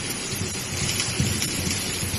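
Fiber laser welding head running along a seam in steel sheet, throwing sparks: a steady crackling hiss.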